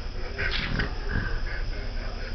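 French bulldog breathing noisily through its short muzzle, with two audible breaths about half a second and just over a second in.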